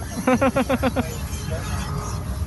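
A person laughing: a quick run of about six short "ha" syllables in the first second, over a steady low rumble.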